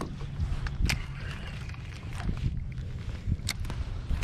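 Small clicks and knocks from gear being handled in a plastic fishing kayak, the two sharpest about a second in and past the middle, over a steady low rumble of wind on the microphone.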